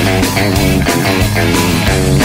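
Punk rock band playing an instrumental passage: a quick electric guitar line over bass and drums, with no singing.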